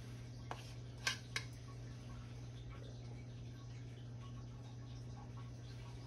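A few light clicks and scrapes in the first second and a half: a spoon knocking against a plastic mixing bowl while spooning out a thick glaze. Under them runs a faint, steady low hum.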